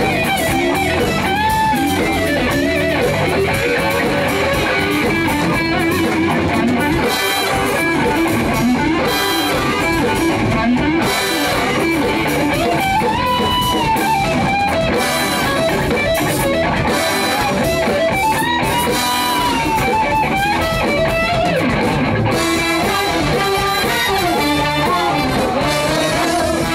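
Live rock band playing: electric guitars over bass and drums, with trumpet, trombone and saxophone playing along.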